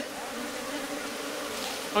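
A mass of Indian honey bees (Apis cerana indica) buzzing in a steady, even hum. The colony is agitated, its nest broken open from the fallen coconut log.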